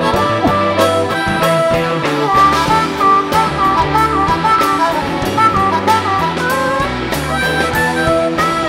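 Live rock trio playing an instrumental jam: an electric guitar lead line with bent notes over electric bass and a drum kit.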